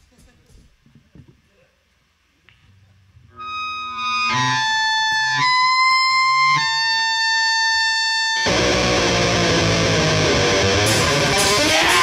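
Punk rock band starting a song. A distorted electric guitar comes in about three and a half seconds in and holds ringing notes, shifting pitch a few times. About eight and a half seconds in, drums and the full band come in loudly.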